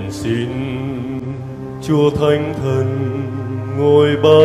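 A church hymn to the Holy Spirit being sung, with long held notes that move from pitch to pitch.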